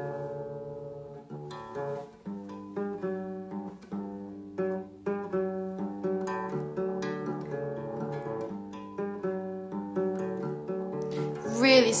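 Acoustic guitar in an open DADFAD tuning, picking a repeating riff of single notes a few times a second, the notes ringing on into each other. Speech comes in near the end.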